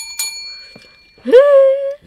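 A bright, bell-like ding struck twice in quick succession, ringing on for about a second. Near the end comes a loud voice that slides up into a held note.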